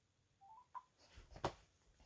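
A phone's short, faint electronic tone rising in three quick steps about half a second in, then a sharp click near the middle: the call failing to go through.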